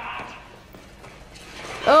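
Quiet, indistinct speech, then near the end a loud, drawn-out cry of "Oh God!" whose pitch falls.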